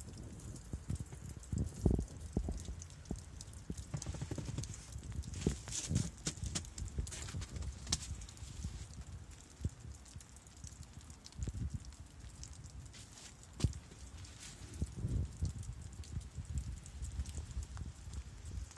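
Wind rumbling unevenly on the microphone, with scattered irregular ticks and clicks throughout.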